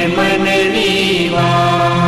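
Hindu devotional hymn sung as a chant with musical accompaniment; the wavering sung line settles into a long held note about halfway through.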